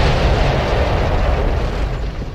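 Cartoon crash explosion as a spaceship hits the ground: a long, loud rumble that dies away near the end.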